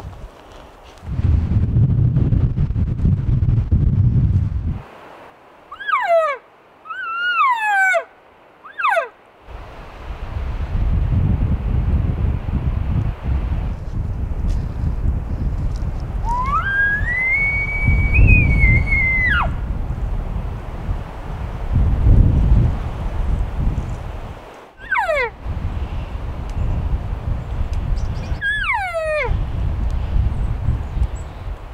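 Elk calls blown by a hunter: three short, falling cow-elk mews, then an elk bugle through a bugle tube about 16 s in, rising to a high whistle held for about three seconds before it breaks off, then two more falling mews near the end. Wind rumbles on the microphone between the calls.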